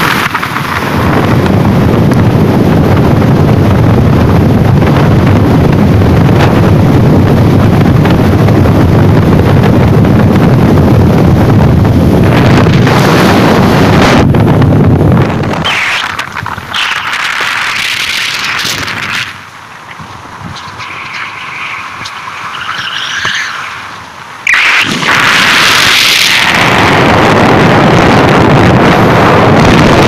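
Wind rushing and buffeting over the microphone of a moving vehicle, mixed with the vehicle's engine and tyre noise. It drops away sharply about halfway through for several seconds, then comes back loud near the end.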